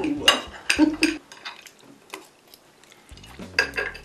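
Metal forks and spoons clinking and scraping on ceramic dinner plates as several people eat, in scattered irregular clicks.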